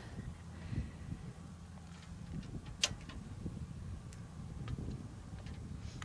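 Quiet outdoor background: a low steady rumble with a few faint ticks and one sharp click a little under three seconds in.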